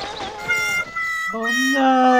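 A long, voice-like cry held on one steady note, beginning about a second and a half in, after a fainter, higher tone.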